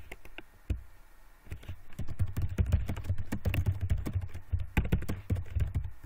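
Computer keyboard typing: a couple of single keystrokes, then a quick, steady run of keystrokes starting about a second and a half in.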